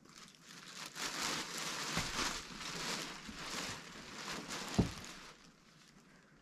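A bag crinkling and rustling as a hand rummages through it, with a soft thump about two seconds in and another near the end.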